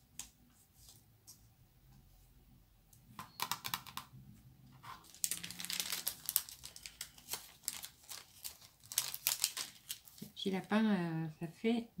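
Crinkling and rustling of a clear plastic bag of die-cut paper shapes being handled and rummaged through, in quick irregular bursts. A woman's voice comes in near the end.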